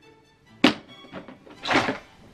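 Black plastic toolbox being opened: a sharp click of the latch about half a second in, then a clatter and thunk near the end as the lid swings open.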